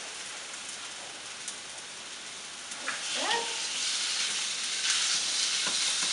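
Onion and garlic sizzling in coconut oil in a hot frying pan as raw ground turkey goes in, the sizzle growing louder about halfway through, with light scrapes and taps of a spatula in the pan.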